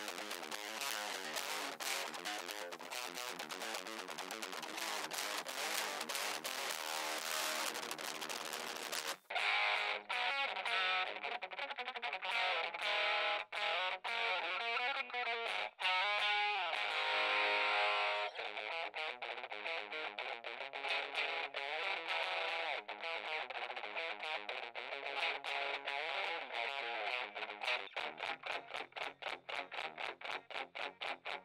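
Electric guitar played through a Joyo JA-01 mini headphone amplifier with a distorted tone. For about the first nine seconds it is heard straight from the amp's output, full and bright. After that it comes through the amp's tiny built-in speaker picked up by a microphone, thin and boxy with no highs, the speaker distorting on essentially every note, and it closes with fast, choppy strokes.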